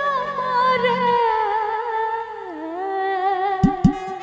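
Live Rajasthani devotional bhajan music: one long held melody note with a low drone under it, gliding down to a lower pitch a little past halfway. Two quick drum strikes come near the end.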